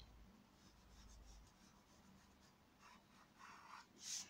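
Very faint, irregular scratching and rubbing strokes of a dry drawing stick on paper.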